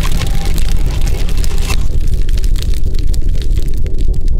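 Cinematic logo sound effect: a loud, deep rumble with dense crackling over it, like a fiery explosion. The crackle drops away a little under two seconds in, leaving the low rumble.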